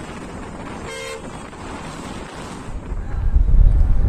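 Road traffic noise with one short vehicle horn toot about a second in. From near three seconds, a loud low rumble of wind buffeting the microphone takes over.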